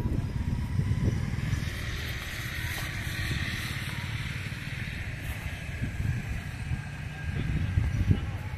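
Steady low outdoor rumble, with a faint higher hiss that swells in the middle and fades again.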